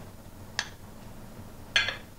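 A single light click of a metal spoon against a ceramic mixing bowl about half a second in, over quiet room tone.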